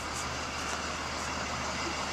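Steady engine and road noise heard from inside a moving car.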